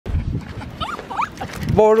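Two short, high, rising whines from a toy poodle a little under a second in, then a person drawing out the word "bōru" (ball) near the end.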